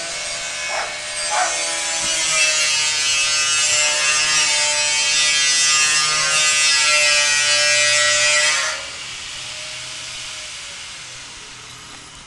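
A power cutting tool, a grinder-type cut-off, cutting through metal tubing. A steady motor whine carries a loud hissing grind from about a second in until almost nine seconds. Then the cut ends abruptly and the motor runs on more quietly, its whine slowly falling in pitch as it winds down.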